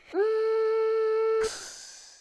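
A single held note at a steady pitch, sliding up briefly as it starts. It lasts about a second and a half, then drops away.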